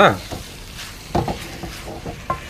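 Wooden spatula stirring and scraping dry-fried beef around a metal kadai, with a low sizzle from the pan and a few scrapes about a second in.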